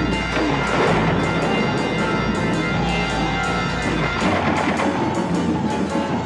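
Film score music played over a battle scene's sound effects, with a run of repeated sharp cracks and impacts.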